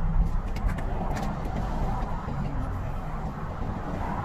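Steady low rumble of a car's engine and road noise heard from inside the cabin in slow, queued traffic, with a few light clicks about a second in.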